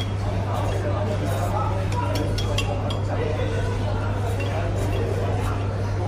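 Chopsticks clinking a few times against a ceramic noodle bowl while a man eats, over background voices and a steady low hum.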